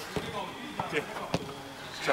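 Faint background chatter of several voices, with a few short, sharp knocks, the clearest one near the end.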